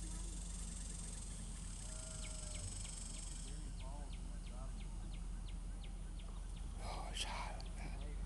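Outdoor ambience with a steady low hum and a faint high hiss. In the middle comes a run of quick, light ticks, about three a second, and faint distant voices are heard near the end.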